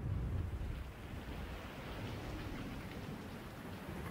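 Steady rain falling, an even rushing that starts suddenly and holds without a break.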